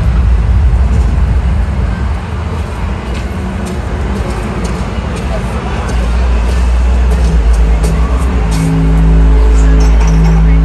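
Soundtrack of a concert interlude video over an arena PA system: heavy, deep bass rumble that swells about six seconds in, with held low musical notes coming in near the end.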